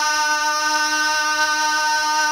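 A naat reciter's voice holding one long, steady sung note at an unchanging pitch.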